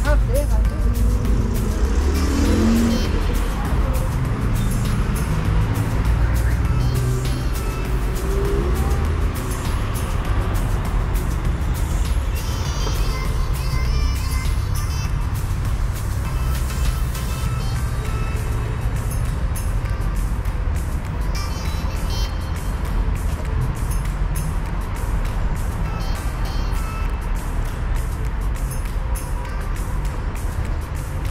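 Street ambience of road traffic: a steady low rumble of cars on the boulevard, with people's voices passing close by in the first few seconds.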